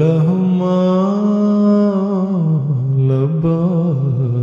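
A man's voice chanting unaccompanied in long, held notes that glide between pitches: one note sustained for about two seconds, then a falling turn and a shorter note near the end.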